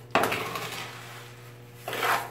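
Trowel stirring and scraping through wet sand-cement mortar in a plastic tub: a sudden scrape just after the start that fades, and a second one near the end.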